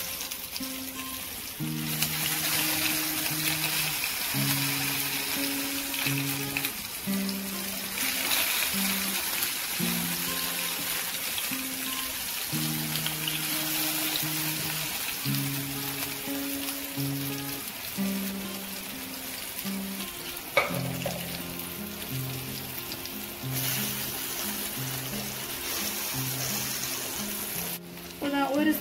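Yam slices shallow frying in hot oil in a pan, a steady sizzle, with background music playing a melody over it. A single sharp knock sounds about two-thirds of the way through.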